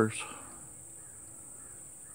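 Quiet rural outdoor background with a faint, steady high-pitched hiss, just after a man's voice trails off.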